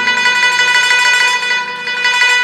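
Guzheng (Chinese zither) played solo: a high note plucked in rapid repetition rings out over the fading lower strings.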